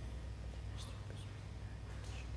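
A steady low hum, with a few faint, brief high-pitched ticks about a second in and near the end.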